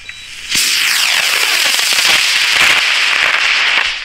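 A high-power model rocket motor ignites about half a second in and burns loudly for about three and a half seconds. It is a rushing hiss that sweeps downward in tone as the rocket climbs, then cuts off suddenly at burnout.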